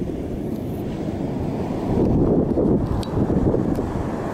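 Wind buffeting the camera's microphone: a low, uneven rumble that gusts louder about two seconds in.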